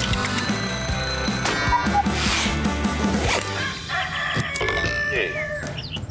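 Short advertising jingle: music with a steady beat and a ringing alarm-clock bell in the first part, and a voice coming in over the music in the last couple of seconds.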